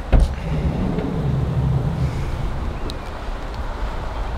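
Sliding side door of a Volkswagen T6 camper van being opened: the latch clicks open just after the start, then a low rumble follows as the door runs back, with wind rumbling on the microphone.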